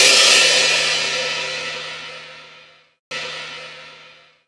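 The closing crash cymbal of an electronic dance track rings out and fades away over about three seconds after the beat stops. Near the end a second, quieter crash cuts in abruptly and begins to decay.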